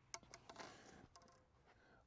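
Near silence: faint outdoor room tone with a couple of faint clicks near the start.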